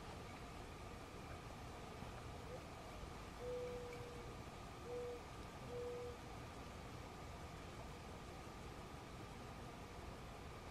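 A bird's low hooting call: one long steady note followed by two shorter ones at the same pitch, over a faint steady outdoor hum.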